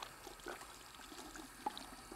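Faint tap water running from a faucet into a sink while hands are washed under the stream, with a few small ticks.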